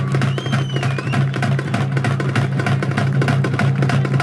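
Fast, dense percussion music: rapid sharp drum strokes over a steady low hum, with a brief high gliding tone about half a second in.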